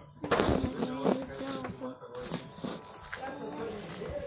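Indistinct children's voices, with a burst of rustling from the phone being handled about a third of a second in.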